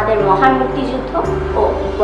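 A girl speaking in Bengali over steady background music.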